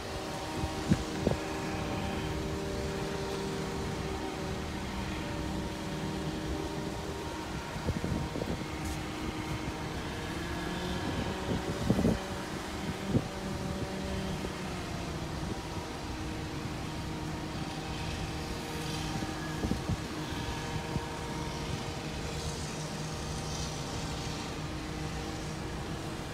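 Steady car noise heard from inside the cabin while driving: a low rumble with held tones, and a few short knocks.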